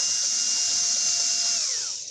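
Cordless drill spinning a tungsten carbide burr against a piece of steel: a steady motor whine over a high grinding hiss. Near the end the whine falls in pitch as the motor winds down.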